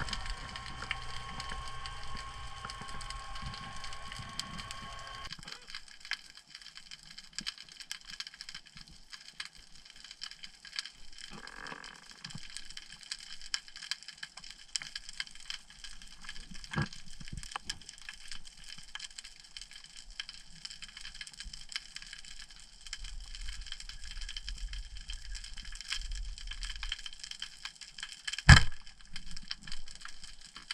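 Underwater sound on a rocky seabed: a constant dense crackle of tiny clicks, typical of snapping shrimp. A steady tone in the first five seconds stops abruptly, and one loud sharp knock comes near the end.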